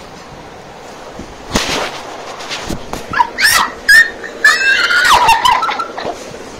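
A person's high-pitched squealing cries: a sharp breathy burst about a second and a half in, then a run of short shrill yelps that glide up and down through the second half.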